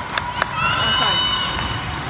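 Volleyball gym din: spectators' voices, two sharp taps within the first half second, then a high squeal lasting about a second, typical of a sneaker squeaking on the sport-court floor.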